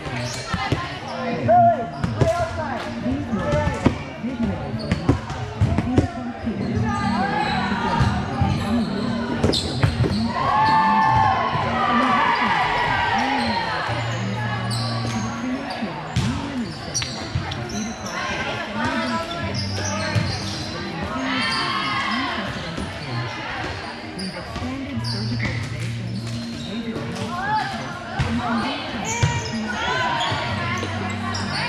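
Indoor volleyball game: the ball being struck and hitting the court in a string of sharp knocks, with players and spectators calling and talking, echoing in a large hall. A steady low hum runs underneath.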